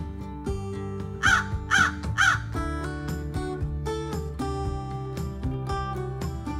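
A crow cawing three times in quick succession, about half a second apart, over steady background music.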